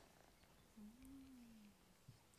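Near silence: room tone, with one faint low hum about a second long near the middle.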